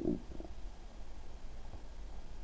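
Low, steady microphone hum with faint hiss: the room tone of a desk recording, with no distinct sound event.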